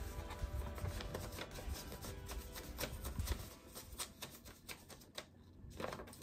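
Paper rustling and sliding as a greeting card is pushed into a paper envelope and handled, a run of small crackles and ticks, over soft background music.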